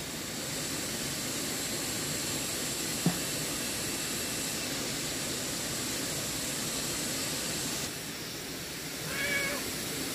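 Steady rush of a shallow stream flowing past, with a single sharp tap about three seconds in. Near the end comes one short, high, wavering animal call, like a meow.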